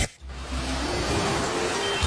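A moment of near silence, then a steady rushing noise with a low hum and faint soft tones beneath it: an ambient sound bed between radio adverts.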